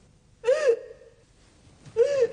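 A woman crying in short wailing sobs: one high wavering cry about half a second in and another just at the end.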